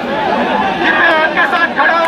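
Crowd of people talking over one another, many voices overlapping with no single voice standing out.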